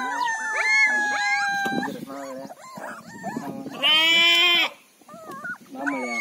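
Young Mudhol hound puppies whining and yelping as they jostle together. A long whine slowly drops in pitch over the first two seconds, and a loud, high squeal comes about four seconds in.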